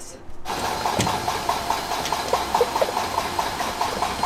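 Hydraulic oil pouring through a funnel into a John Deere combine's hydraulic reservoir, a steady rushing pour with irregular glugs several times a second, starting suddenly about half a second in, with a sharp click about a second in. The reservoir is being refilled after a leaking hydraulic line drained it.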